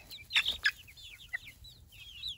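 Young chickens peeping and clucking: a run of short, high, falling chirps, with a couple of louder calls about half a second in.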